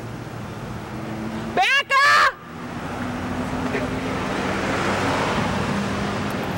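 A woman's loud, high-pitched scream, two quick shrieks about a second and a half in, over steady street traffic noise.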